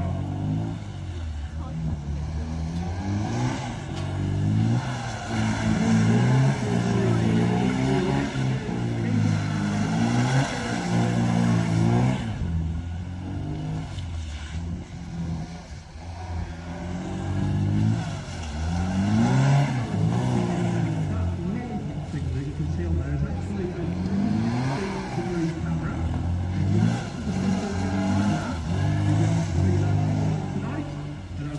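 Classic Mini engines revving up and down repeatedly as the cars are driven around a display course, the pitch rising and falling every couple of seconds.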